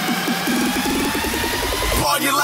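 Hardstyle build-up in a DJ mix: a pitched note repeating faster and faster over a slowly rising sweep, with the bass swelling near the end.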